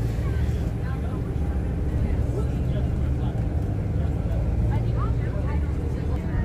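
Airport shuttle bus running, a steady low engine and road rumble heard from inside the passenger cabin.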